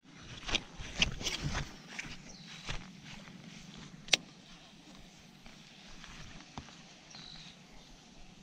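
Close handling noise from a baitcasting rod and reel: a cluster of knocks and rustles in the first two seconds, then a single sharp click about four seconds in, with a few softer ticks after it.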